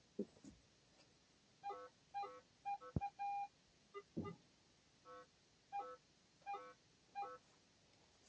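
Metal detector giving a string of short electronic beeps at a couple of different pitches as it is swept over the ground, one held a little longer about three seconds in. A sharp click sounds just before that longer beep.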